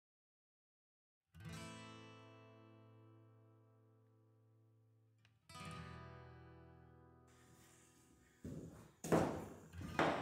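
Acoustic guitar music: two strummed chords, the first about a second in and the second about five seconds in, each left to ring and fade out.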